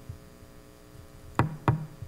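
Steady electrical mains hum, with two short sharp sounds, knocks or clicks, about a second and a half in, a third of a second apart.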